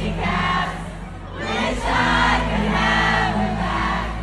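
Live pop concert heard from within the audience: many voices singing along in phrases over the band's music, which has a steady low bass. There is a brief lull about a second in.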